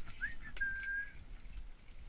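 A single short whistled note that rises briefly, then holds steady for about a second, with a couple of faint clicks.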